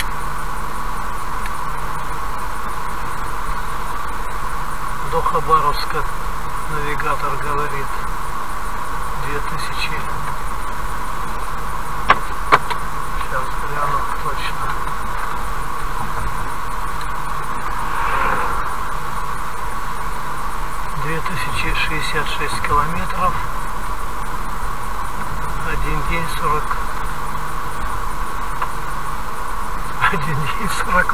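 Steady cabin noise of a car driving at about 55 km/h, a constant hum of tyres and engine as heard through a dashcam. Faint, indistinct voices come and go, and there are two sharp clicks about twelve seconds in.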